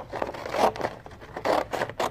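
Scissors cutting through a manila file folder, three snips about a second apart, with the folder rustling as it is turned.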